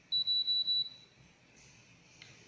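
DVP-740 mini FTTx fusion splicer's electronic beeper giving one short high-pitched beep, pulsing quickly a few times over just under a second.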